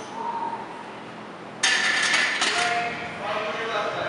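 A loaded barbell is set back into the steel hooks of a squat rack: a sudden metallic clatter with the plates rattling, about a second and a half in, then a second clank and some ringing.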